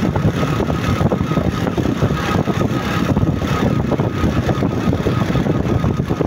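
A vehicle's engine running steadily, with road and wind noise, heard from on board while moving.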